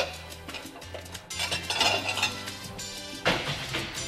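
Background music, over a kitchen utensil scraping and clinking against a small ceramic bowl, with a sharper knock about three seconds in.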